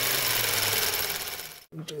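Transition sound effect of a small machine running: a steady noisy whirr over a low hum, fading away and cutting off shortly before the end.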